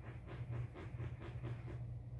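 Faint, rhythmic swishing of a makeup brush stroking bronzing powder along the cheekbone, about five strokes a second, over a steady low hum.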